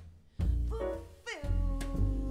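Female jazz vocalist singing with a piano, double bass and drums trio. After a short lull, her phrase slides down in pitch about halfway through and settles into a held note over the bass.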